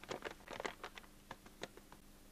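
Paper sugar bag being shaken out over a weighing-scale bowl: a quick, irregular run of crinkles and rustles from the bag, with sugar pattering into the bowl.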